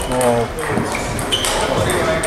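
Table tennis ball knocks: a few short, sharp clicks of celluloid ball on bat and table, in the second half. A short voiced call comes just at the start.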